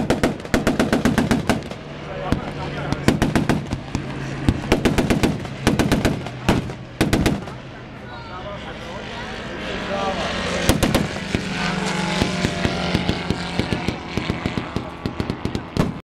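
Repeated short bursts of rapid automatic gunfire, each lasting about a second, over the steady drone of an aircraft engine.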